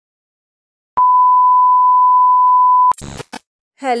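A loud, steady, single-pitch electronic beep lasting about two seconds, starting a second in and cutting off abruptly, followed by a short burst of crackling noise.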